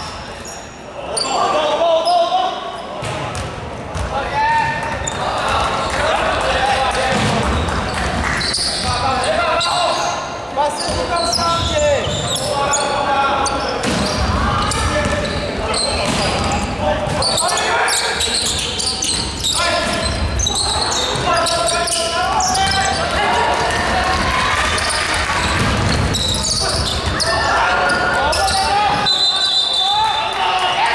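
Basketball being played in a large indoor sports hall: voices of players and onlookers calling out throughout, with the ball bouncing on the wooden court floor.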